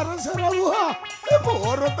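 A voice singing a melodic line over instrumental music with a steady, regular drum beat.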